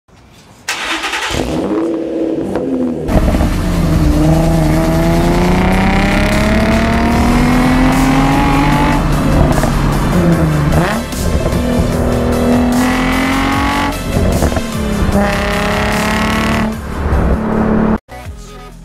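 A car engine and exhaust accelerating hard through the gears. The pitch climbs in long pulls and drops sharply at each upshift, several times over.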